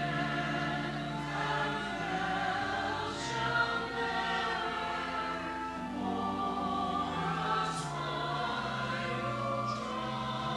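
Church choir singing, with held low notes sounding underneath as accompaniment and sung 's' sounds hissing out a few times.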